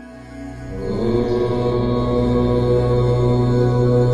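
Meditative background music: one steady, low held drone with overtones that swells in over the first second and then holds.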